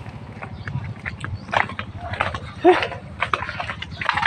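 Footsteps on gravelly ground: a run of short, irregular steps, with a couple of brief vocal sounds in between.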